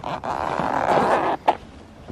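Zipper of a soft rifle case being pulled open in one long, rasping stroke, followed by a sharp click about a second and a half in.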